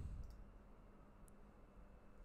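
Near silence with a single faint click of a computer mouse button about a second in.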